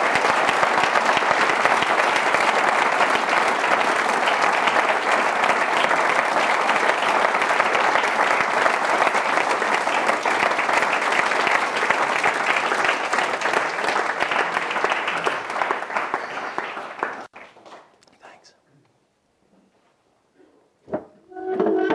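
Audience applauding at the close of a lecture, a steady, dense clapping that stops abruptly about seventeen seconds in.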